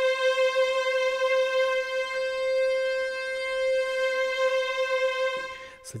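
Sampled chamber string ensemble (Spitfire Sable ensemble patch) holding one long bowed note a little above 500 Hz, its vibrato worked live from a hardware fader. The note stops just before the end.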